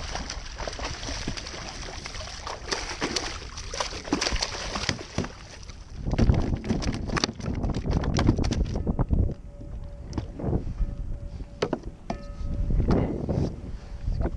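A hooked bluefish splashing and thrashing at the surface beside a plastic fishing kayak, then flopping on the deck, with a dense run of splashes and sharp knocks that is loudest a little past the middle and thins out after that.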